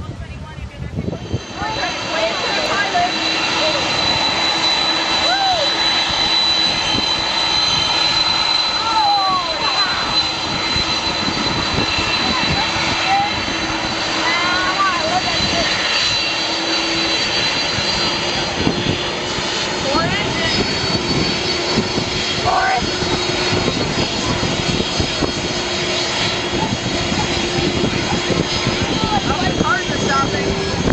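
Jet engines of a KLM Boeing 747 running with a steady whine and a low hum, with voices of onlookers over it.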